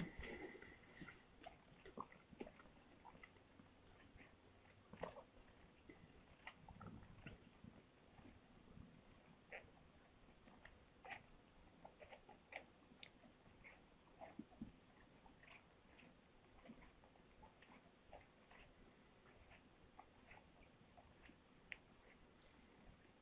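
Mother cat licking a newborn kitten clean: faint, irregular wet licking and mouth clicks, with one sharp knock right at the start.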